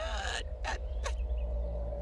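Anime soundtrack: a character's short gasp at the start, then a steady held tone over a constant low hum.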